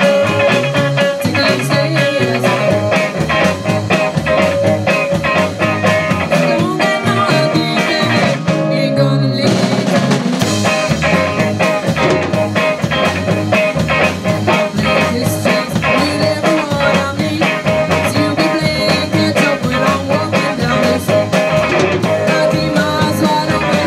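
Live beat group playing a fuzzy, stomping 1960s-style rock number on two electric guitars and a drum kit. The drums and cymbals drop out for about a second around nine seconds in, then the full band comes back in.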